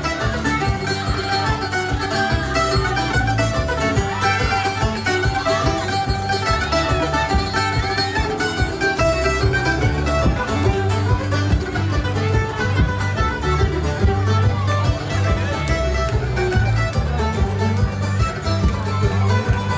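Live amplified folk band playing an instrumental passage: picked banjo and mandolin-type melody over strummed acoustic guitar and a steady bass guitar, through a PA.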